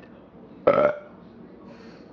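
A single short burp about two-thirds of a second in.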